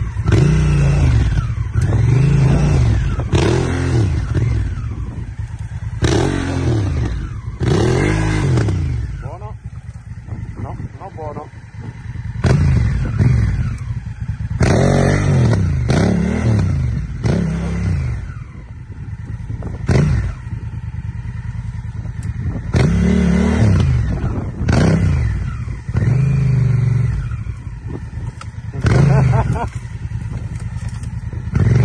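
Honda Africa Twin's parallel-twin engine revved in short blips again and again, each rising and falling in pitch within about a second, dropping back to a lower steadier note between them, as the heavy adventure bike is worked back and forth to pivot it round on a narrow trail.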